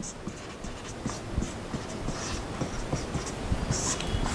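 A marker writing on a whiteboard: a run of short, irregular scratchy strokes as the pen tip moves across the board, with light taps between them.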